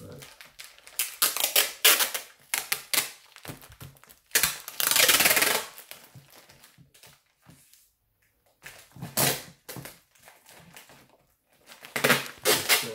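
Tape being pulled off the roll in a long rip of about a second and a half, a little after four seconds in, amid short rustles and crinkles of the plastic grow bag as the tape is pressed onto it. Another short burst of rustling comes around nine seconds.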